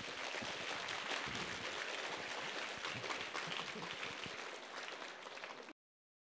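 Audience applauding, many hands clapping at once; the clapping cuts off abruptly near the end.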